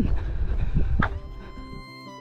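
Wind rumbling on the microphone until about a second in, when it gives way to background music of held notes and light plucked strings.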